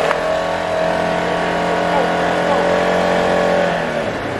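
Side-by-side off-road vehicle's engine running at a steady speed, a loud even drone that holds one pitch, heard from on board.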